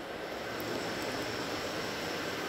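Steady background noise between sentences, a low even rushing hiss that grows slightly louder.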